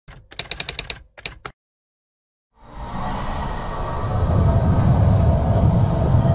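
Edited sound effects: a fast run of sharp clicks in the first second and a half, then, after a short silence, a deep rumble that swells steadily louder.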